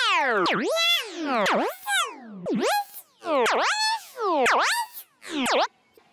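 Electronic synthesizer sound effect: a stack of tones swooping steeply down in pitch and straight back up, repeated about once a second, six times over.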